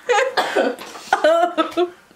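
A person's voice making short sounds without words: a cough-like burst at the start, then a quick run of short pitched syllables that stops just before the end.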